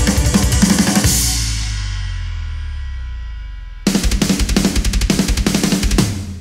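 Drum kit played hard in a fast metal pattern, with dense kick and snare hits under cymbals. About a second in the drumming stops, leaving a cymbal and a held low tone from the backing track to die away. Just before the four-second mark the full drumming comes crashing back in.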